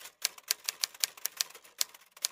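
Typewriter sound effect: a quick, even run of keystroke clicks, about eight a second, typing out text.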